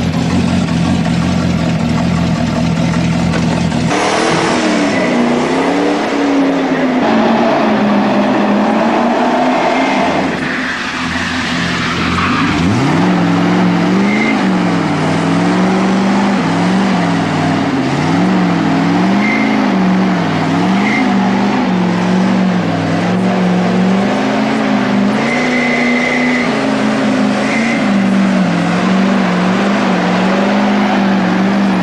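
Hot rod roadster engine idling steadily, then revving up about four seconds in as the car pulls away. From about halfway its pitch rises and falls again and again as it is driven hard around the arena, with a few short high squeals.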